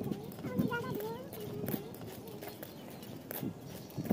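A young girl's voice with light taps and scuffs, like footsteps on a concrete roof.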